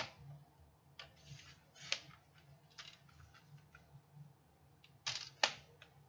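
Card being cut into one-inch strips on a paper trimmer: a few sharp clicks with small ticks and scraping between them, the loudest pair of clicks close together near the end.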